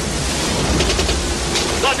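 Steady wash of ocean surf and wind, with a few faint sharp cracks about halfway through.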